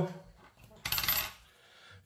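A short rasping scrape on a lottery scratchcard, about half a second long, a little under a second in.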